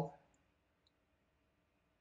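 Near silence between phrases of a man's narration, with a couple of faint clicks.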